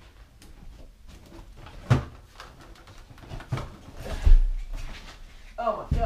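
Bumping, rustling and scraping of stored things in a cluttered closet as someone climbs in among cardboard boxes, with a sharp knock about two seconds in and a heavy low thump just after four seconds, the loudest sound.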